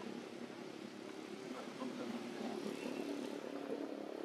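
Steady low background engine noise, with faint voices mixed in.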